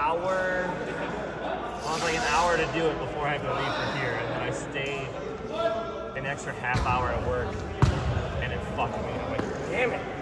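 Players' voices carrying in a large gym, with one sharp smack of a volleyball about eight seconds in.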